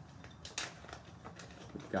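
Tape being peeled off a new plastic rat bait station: faint handling noises, with a short, sharper sound about half a second in.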